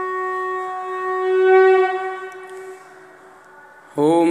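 Conch shell (shankh) blown in one long, steady note that swells briefly and then fades out about two seconds in.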